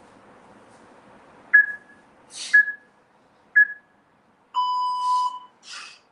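Gym interval timer counting down the end of an EMOM minute: three short high beeps a second apart, then a longer, lower beep that marks the start of the next round.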